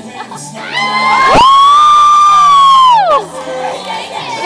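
A single high-pitched scream from someone in the audience: it shoots up in pitch about a second in, holds loud and steady for about a second and a half, then slides down and stops. Music and crowd noise run faintly underneath.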